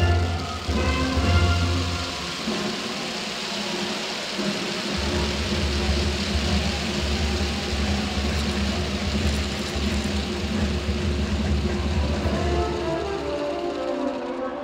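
Marinera music playing over an arena's loudspeakers with a steady bass, overlaid from about two seconds in until near the end by a dense wash of crowd noise, applause and cheering, that mostly covers the melody.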